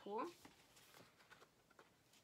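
Faint light ticks and rustles of a painted paper sheet being lifted and handled, following a single spoken word.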